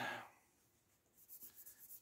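A wool cloth rubbed in quick back-and-forth strokes over a guitar's wooden fretboard, working in lemon oil: a faint, rhythmic scrubbing that starts about a second in.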